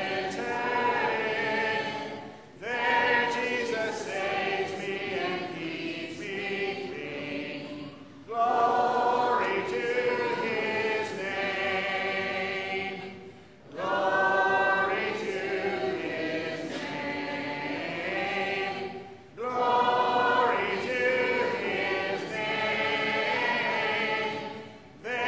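A congregation singing a hymn a cappella, with no instruments. The singing goes in phrases of about five to six seconds, each separated by a short break for breath.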